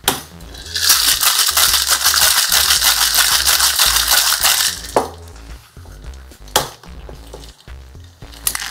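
Ice rattling hard inside a Boston shaker (metal tin capped with a mixing glass) for about four seconds as a cocktail is shaken, followed by two sharp knocks about a second and a half apart. Low background music runs underneath.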